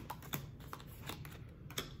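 Tarot cards being handled and laid out on a table: several light, irregular clicks and taps.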